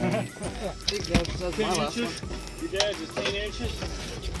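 Indistinct voices with music playing in the background, over a steady low rumble.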